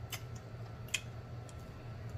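Faint mouth clicks and smacks of someone chewing food, a few scattered ticks over a low steady hum.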